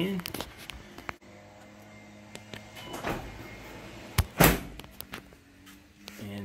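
Minn Kota Talon shallow-water anchors retracting on command from the wireless foot switch, their motors giving a faint steady hum. There are a few sharp clicks, and a loud thunk about four and a half seconds in.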